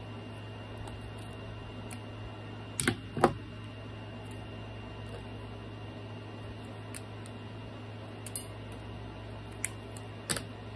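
Hard craft tools handled on a cutting mat: two sharp clacks about three seconds in, as a large pair of scissors is set down, then a couple of lighter taps near the end, over a steady low hum.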